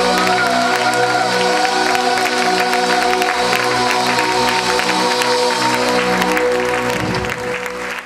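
Live band music built on sustained keyboard chords, with audience applause and clapping over it from about a second in. It all fades out near the end.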